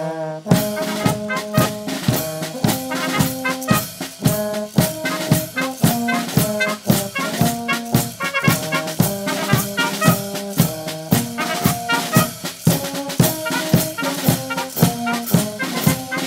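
Brass band playing a lively tune: trumpets and low brass horns and tuba over a steady beat on bass drum, snare drum and cymbals.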